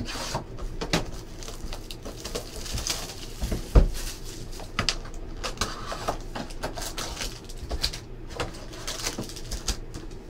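Hands opening a cardboard trading-card hobby box and pulling out its foil packs: a busy run of rustles, scrapes and clicks of card and foil being handled and set down, with one heavier thump a little before four seconds in.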